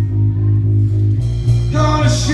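Live rock band playing an instrumental gap between sung lines: a sustained low bass note that shifts to a new note just over a second in, with electric guitar coming back in near the end.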